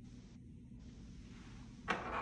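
Quiet room tone, then near the end a single sharp click followed by a brief scraping rustle as a syringe and medication vial are handled on a countertop.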